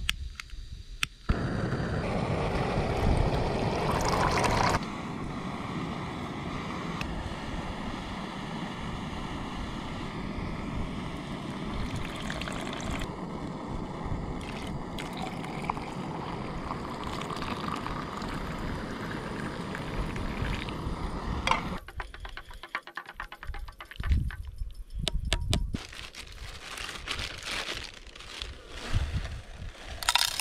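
Small portable gas canister stove lit about a second in and then burning with a steady hiss under a pot of water, louder for the first few seconds. Boiled water is poured into a mug. Near the end come irregular clicks and rustles of camp cooking gear being handled.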